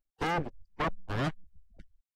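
A man's voice speaking in short phrases, with the sound dropping to dead silence between them.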